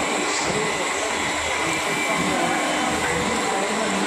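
Steady, loud running noise of many workshop machines at once, a dense even drone with a faint constant whine in it.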